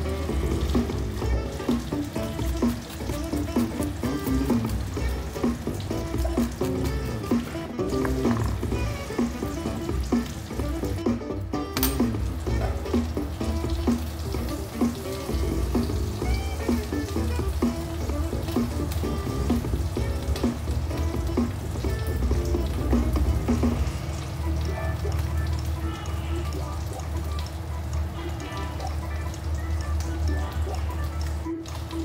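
Pieces of loach frying in hot oil, sizzling steadily, under background music.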